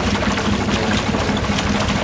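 Steady drone of a boat motor running alongside, with water splashing and sloshing from the swimmer's strokes.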